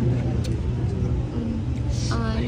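A steady low background rumble, with no clear speech above it, during a short pause between sentences.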